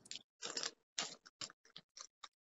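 Faint, irregular short clicks and smacks of mouths chewing Sour Patch Kids gummy candy. The sound cuts out to silence between them.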